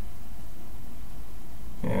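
Steady low background rumble with no distinct event, until a man's voice begins near the end.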